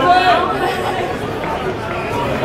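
Indistinct chatter of trackside spectators' voices, with one voice louder in the first half-second.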